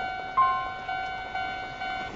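Electronic tone from a Japanese pedestrian crossing signal: a steady beeping note pulsing about twice a second, with one brief higher note about half a second in.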